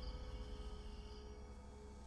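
Dramatic background score: sustained held tones fading out.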